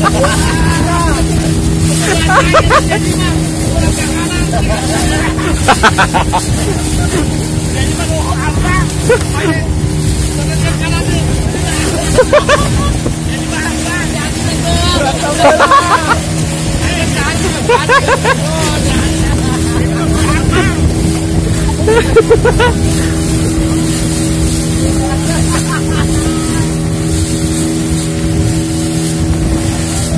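Outrigger boat's motor running steadily at one pitch, with water rushing and splashing past the hull, and voices shouting and laughing in short bursts now and then.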